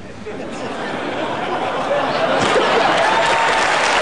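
Studio audience applauding. The applause builds over the first two seconds or so and then holds steady, with a few voices over it.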